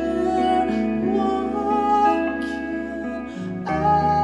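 Live guitar and bass guitar playing a slow song: ringing guitar chords over long, held bass notes. The bass drops out briefly near the end and comes back on a new note as the chord changes.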